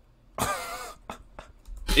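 A man's single short, throaty cough about half a second in, followed by two faint clicks. Speech starts right at the end.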